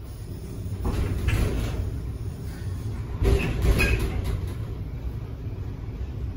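Schindler inclined traction elevator car running on its sloping track: a low rumble that builds about a second in, with a couple of sharp clunks around the middle.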